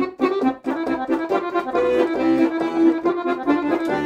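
Piano accordion played solo: a quick melody of fast-changing notes, with a note held briefly in the middle.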